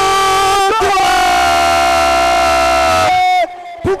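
A sports commentator's long, drawn-out goal shout: one loud held note for about three and a half seconds that breaks off near the end.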